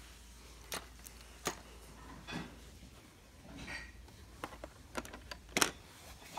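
A few scattered soft clicks and taps from plastic LEGO pieces and the phone being handled, the sharpest near the end.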